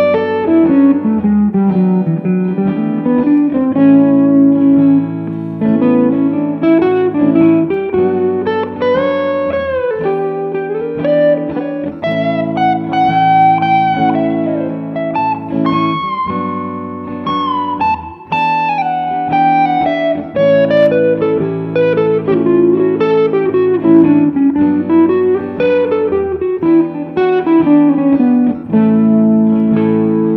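PRS semi-hollow electric guitar playing a lead line full of bends and slides over sustained chords, improvising over a Mixolydian chord progression.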